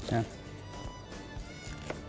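Kitchen knife slicing peeled sweet potato on a wooden cutting board: a few faint knocks of the blade meeting the board, the clearest near the end, under steady background music.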